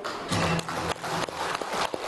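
Studio audience applauding, with a short low musical note sounding underneath during the first half of the clapping.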